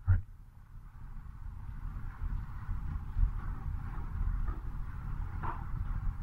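Low, steady room rumble with faint, muffled speech from across the room, slowly growing louder. A short spoken sound is heard at the very start.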